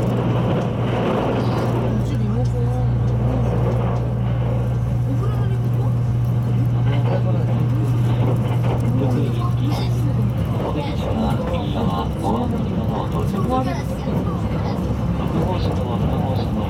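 Inside a JR West 681 series electric limited express train running at speed: a steady running rumble with a low steady hum that stops about ten seconds in, and indistinct chatter from passengers in the crowded carriage.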